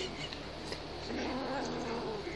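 Kitten growling to guard its treats, a low wavering growl in the second half.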